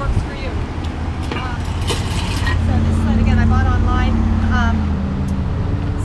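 A motor vehicle's engine passing on the street: a low drone that swells to its loudest about halfway through and fades near the end, under a woman talking.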